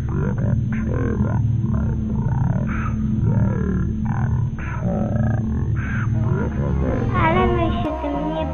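A voice reciting a Polish verse over a low, steady drone in the music. About seven seconds in, a clearer, higher voice begins speaking.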